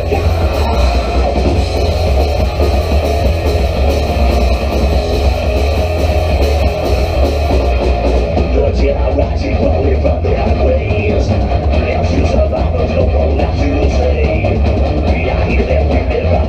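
Live horror punk band playing loud, steady rock with electric guitars, bass and drums.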